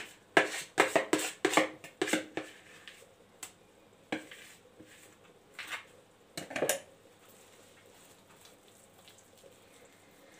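A spoon scraping and knocking thick batter out of a plastic bowl into a round metal baking tray: a quick run of clicks and knocks in the first couple of seconds, then a few scattered ones until about seven seconds in.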